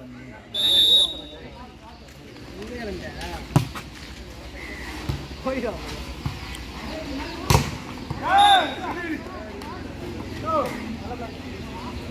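Volleyball being played: a short, steady referee's whistle blast near the start, a sharp hit on the ball a few seconds in and a louder hit about halfway, then a second short whistle blast among players' shouts.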